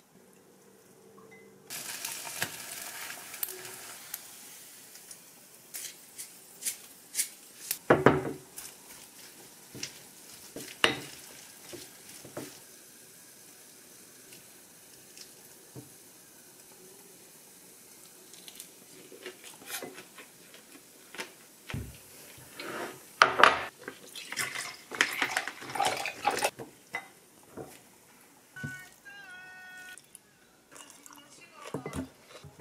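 Chopsticks and a wooden spoon clinking and scraping against a glass mixing bowl as rice is mixed with seasoned vegetables. There are scattered sharp knocks: the loudest come about eight and eleven seconds in, with a busy run of them between about 23 and 27 seconds.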